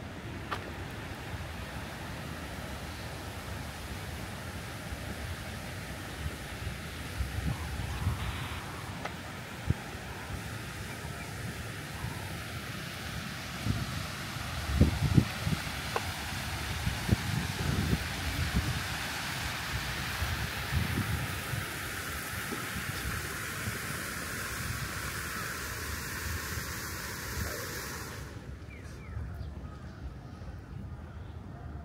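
Park fountain jets spraying and splashing into a pool: a steady hissing rush that grows louder and stops abruptly near the end. Low rumbling bursts come and go through the middle.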